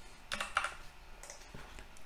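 Computer keyboard being typed on: a few short keystroke clicks, bunched together about half a second in, with fainter ones later.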